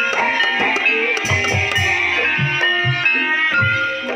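Javanese gamelan-style ensemble music accompanying an ebeg trance dance: ringing pitched melodic notes over a steady low drum beat.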